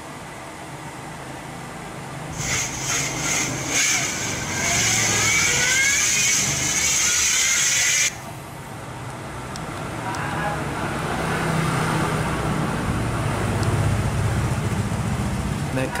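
The startup tune of a Vertu A8 (V403) clone feature phone plays through its small, tinny speaker as it boots. The tune is bright, with several rising sweeps, and cuts off abruptly after about six seconds. Later a low rumble builds in the background.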